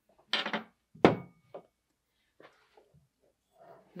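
Handling noise from the parts of a laser rotary attachment: a brief scrape, then a sharp clunk about a second in, followed by a few faint knocks as the small roller support piece is picked up and moved.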